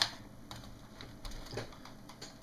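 A sharp plastic click at the start, then a few faint light taps and knocks as the Acer AL2017 monitor's plastic stand and housing are handled.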